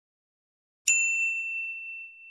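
A single bright notification-bell ding about a second in, one clear ringing tone that fades away slowly over more than a second.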